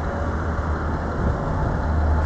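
Steady low rumble with a constant background hiss, with no distinct events.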